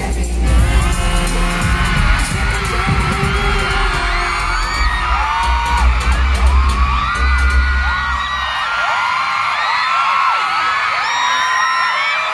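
Amplified pop music with heavy bass playing over a crowd of fans screaming in many short, high-pitched cries. The music stops about eight and a half seconds in, and the screaming crowd carries on.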